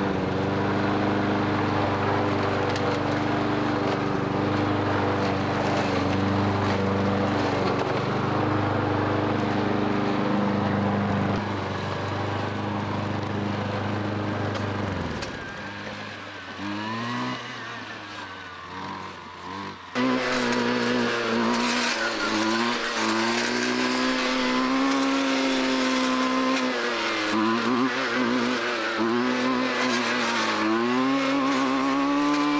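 Gas push lawn mower running steadily, then stopping about halfway through. A gas string trimmer revving up and down as it cuts tall grass follows, faint at first and suddenly much louder about two-thirds of the way in.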